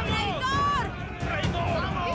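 A crowd of several people shouting at once, raised voices overlapping with no single clear word.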